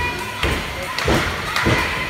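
Repeated heavy thuds on a wrestling ring, about one every half second or so, with voices over them.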